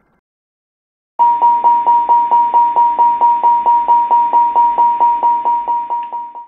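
ATR warning system's Continuous Repetitive Chime (CRC): a steady chime repeating about four times a second, starting about a second in. It signals that something is seriously wrong and that immediate action is required.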